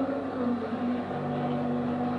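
Background music for a stage posing routine, here a stretch of long, steady held low notes, with a second lower note coming in about a second in.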